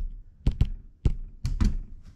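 Handling noise from a phone held at arm's length: a string of sharp taps and knocks, about five in two seconds, as fingers tap and grip the phone.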